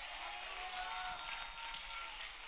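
Faint room sound of a church congregation during a pause in the preaching, with a soft held tone underneath.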